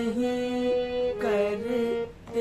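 Harmonium playing a slow melody phrase in held, reedy notes, stepping to a new note about every half second.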